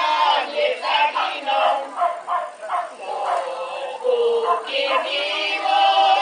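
A small group of women's voices singing a folk song unaccompanied, with held notes and short breaks between phrases.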